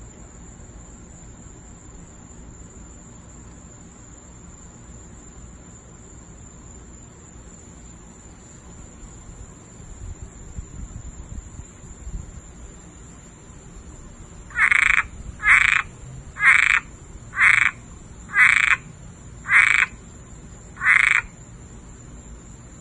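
A small frog calling: seven short croaks, about one a second, starting about two-thirds of the way in.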